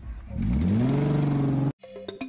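Car engine revving: its pitch climbs for about half a second, then holds high and steady. It cuts off abruptly near the end.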